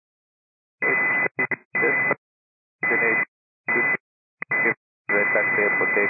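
Air-traffic-control VHF radio audio: several short keyed transmissions in quick succession, each a clipped burst of narrow-band radio sound carrying a steady high tone. About five seconds in, a longer transmission begins with a pilot's voice.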